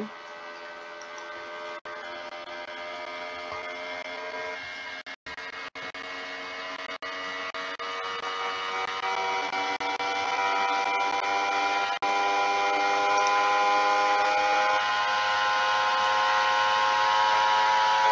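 A steady machine hum made of several tones that grows gradually louder, broken by a few brief dropouts.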